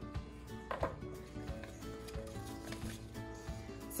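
Soft background music with held notes. About a second in comes a brief rattle of sprouting seeds being tipped from a tablespoon into a glass mason jar.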